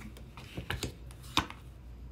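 A few light clicks and taps of tarot cards being handled and laid down on a cloth-covered table, the sharpest about a second and a half in.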